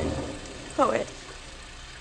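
Steady hiss of a rain sound effect in an old radio drama recording, with one short falling vocal sound from a man about a second in.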